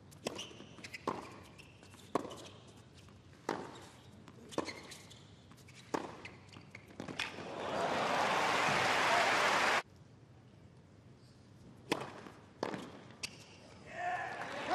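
Tennis rally: racket strikes on the ball about once a second, each a sharp pop, followed by crowd applause and cheering that rises after the point ends and cuts off suddenly. Near the end, a few more ball strikes as the next point gets under way.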